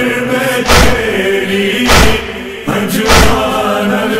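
Nauha chorus of male voices chanting in held tones over a steady matam beat of heavy chest-beating thuds, three strokes about 1.2 s apart.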